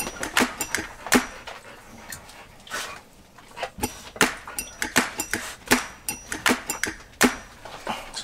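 Two dogs giving short, excited yips and whimpers while begging for treats held above them, with irregular sharp clicks and taps throughout.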